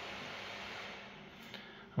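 Acer Nitro 5 laptop's CPU and GPU cooling fans running at high speed, about 5,700 rpm, a steady airy whoosh. It eases off a little in the second half as the fans slow.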